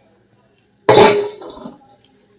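A stainless steel plate clanks once against kitchen utensils about a second in, ringing briefly before it fades.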